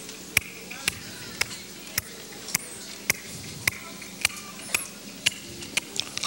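A steady beat of sharp taps or clicks, about two a second, over a faint background murmur.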